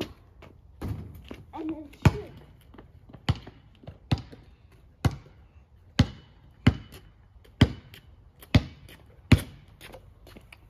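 Basketball being dribbled on a paved driveway, a sharp bounce about once a second, about ten in all.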